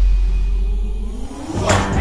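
Trailer sound design: a deep low boom dies away over about a second and a half, then a short whoosh swells up near the end as a transition into the next music.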